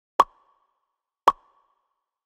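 Two short pop sound effects about a second apart, each a sharp click with a brief ringing tail.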